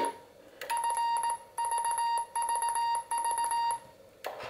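CW sidetone from a homemade QRP transceiver's built-in electronic keyer: a steady, high-pitched, slightly buzzy Morse tone keyed on and off in several long elements with short gaps, starting just under a second in.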